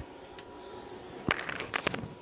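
A few quick clicks and knocks of handling about two-thirds of the way through, over a faint steady hum.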